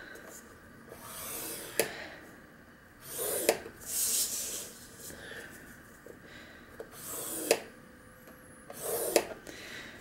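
A scoring stylus drawn along the groove of a paper-scoring board, creasing black cardstock: about five scratchy strokes, each about a second long, several ending in a light click as the tool lifts or taps.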